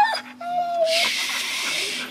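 Siberian husky whining: a short falling cry, then a steady high whine lasting about half a second. Then comes a loud hiss of air for about a second, as the bicycle tyre is being pumped.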